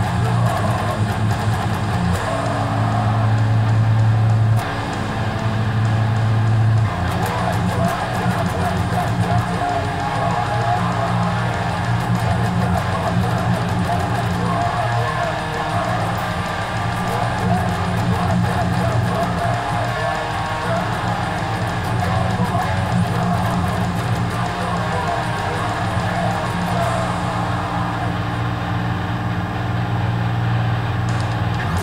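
Electric guitar playing heavy hardcore riffs, with a loud, thick low end.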